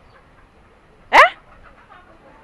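A woman's short exclamation, "Eh?", about a second in, its pitch rising sharply like a questioning yelp; otherwise quiet.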